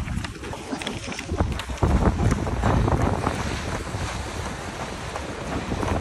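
Wind buffeting a handheld camera's microphone while running: a rushing, rumbling noise that gets louder about two seconds in.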